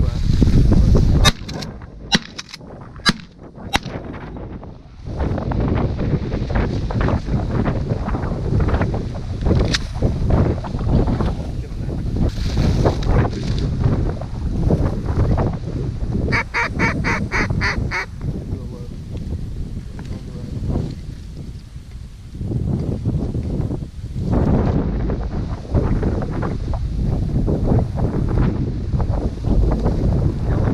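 Geese honking and ducks quacking, over a steady rush of wind on the microphone. About 16 seconds in comes a quick run of evenly spaced calls.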